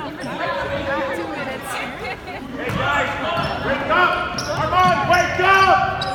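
Basketball game on a gym's hardwood floor: sneakers squeak in short, sharp chirps and the ball bounces, with voices in a large, echoing hall. The squeaks come thickest in the last two seconds as players run down the court.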